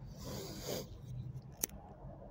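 Clothing rustling right against a chest-worn phone's microphone for just under a second, then a single sharp click about a second and a half in.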